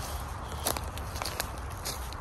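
Footsteps through forest-floor litter and undergrowth, with a few light clicks.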